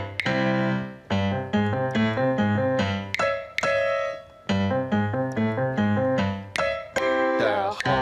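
Instrumental keyboard interlude of a children's song: bright piano-like chords struck in a regular bouncing pattern, with singing coming back in right at the end.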